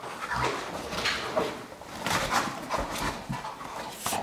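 A Rottweiler making short, irregular vocal sounds, a run of whines and low barks, while it moves to its ball.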